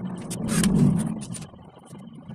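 Cordless drill driving a screw into a laminated board cabinet panel: the motor runs for about a second and a half, building to its loudest around the middle, then winding down.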